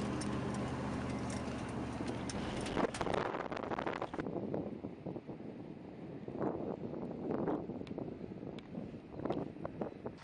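Steady low hum of a running vehicle engine, heard from a storm chasers' car. After a cut about four seconds in, it gives way to quieter, uneven swells of outdoor noise.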